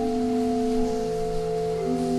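Pipe organ playing slow, held chords, with one note of the chord moving at a time.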